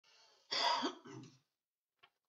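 A man clearing his throat: one loud rasp about half a second in, then a shorter, lower one.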